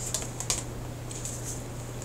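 Tarot cards being handled: a few light clicks and a soft rustle as a card is drawn from the deck.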